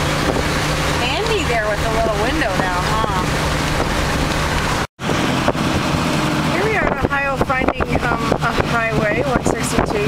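A 1934 Packard driving on the road, heard from inside the cabin: a steady engine hum with road noise and wind on the microphone, and indistinct voices over it. The sound drops out for a split second about halfway through.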